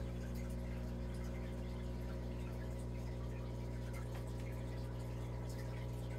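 Steady hum of aquarium pump equipment, with faint bubbling of water from the aerated tank.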